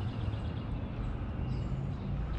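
Steady outdoor background noise, mostly a low rumble, with no distinct event.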